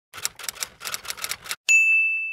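Typewriter keys clacking in a quick run of keystrokes, then the carriage bell dings once and rings on, fading.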